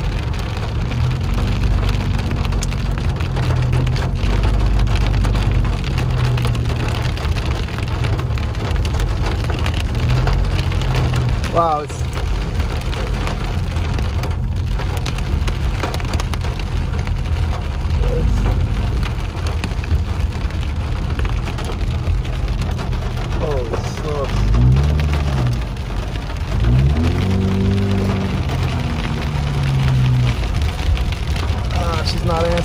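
Heavy rain and hail pelting a moving car, heard from inside the cabin as a steady drumming hiss over the low rumble of the car driving.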